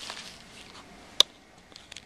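A single sharp click about a second in, then a couple of faint ticks, over quiet small-room tone.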